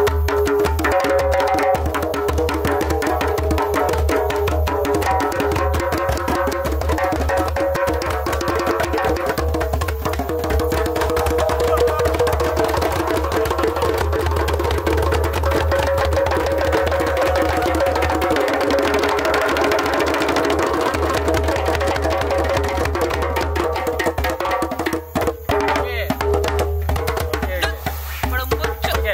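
Several hand-played djembes drumming together in a fast, dense group rhythm. The playing breaks up near the end.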